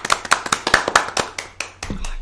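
Brief applause from a few people clapping hands, a quick irregular run of distinct claps after an award is announced, dying away near the end.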